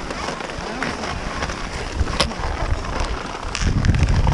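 Wind buffeting the microphone in gusts, with low rumbles that grow stronger near the end, over scattered clicks and scrapes of skis and poles on packed snow.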